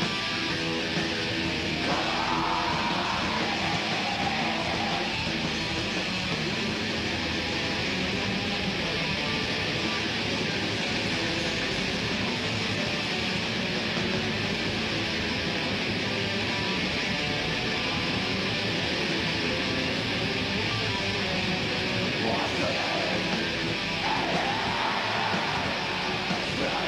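Black metal band playing live, recorded from the crowd: distorted electric guitars, bass and drums as a dense, unbroken wall of sound. Harsh shouted vocals come in about two seconds in and again near the end.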